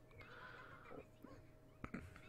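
Near silence, with a faint, breathy stifled laugh early on and one sharp click near the end.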